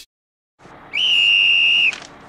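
A single high whistled note, held steady for about a second after a quick upward slide at its start.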